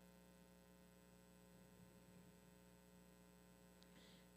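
Near silence: a faint, steady electrical hum.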